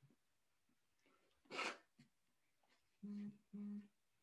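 Faint sounds of a man using a tissue at his nose: a short breathy nasal burst about a second and a half in, then two brief, steady low hums near the end.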